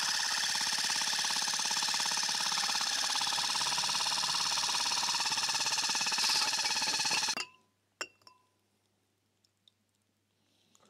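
Cordless drill running steadily, spinning a homemade rotor-stator shear mixer head (built from a stepper motor's rotor and stator) through a beaker of titanium dioxide and water, then stopping suddenly about seven seconds in. A couple of light clicks follow.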